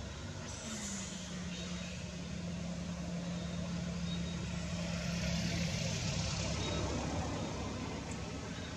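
A motor vehicle's engine runs with a steady low hum that sets in about a second in and dips slightly in pitch. Its noise swells and grows louder around five to six seconds in, then eases.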